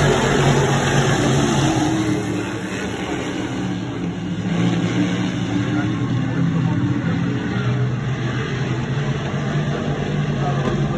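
A pack of sportsman modified dirt-track race cars' V8 engines running hard at racing speed, loudest as the cars pass close by at the start. The sound eases a couple of seconds in as they move away and builds again about five seconds in.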